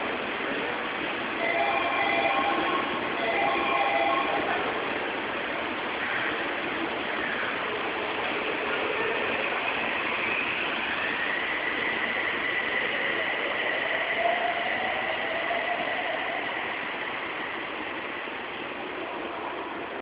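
Toei 6300-series subway train departing: an electronic chime sounds twice early on, then the traction motors' inverter whine rises in pitch as the train accelerates away and settles into a steady high tone. The running noise fades near the end.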